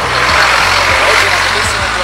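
A road vehicle passing close by: a rushing noise that swells through the middle and eases off, over steady background music.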